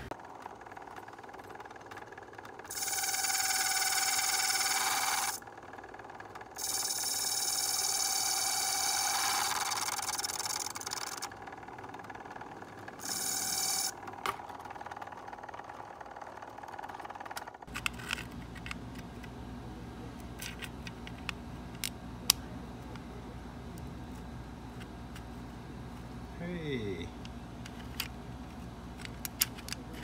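Key-cutting machine's cutting wheel grinding a notch wider in the bit of a skeleton key, in three bursts, the middle one about four seconds long. After the third, a lower steady hum runs on with scattered small clicks and taps of metal.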